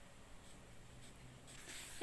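Faint scratching of a pencil moving across a textbook page.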